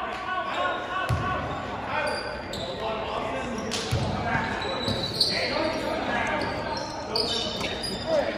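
Basketball bouncing on a hardwood gym floor, with a few thumps and short high sneaker squeaks from the second half on, over spectators chattering in an echoing gym.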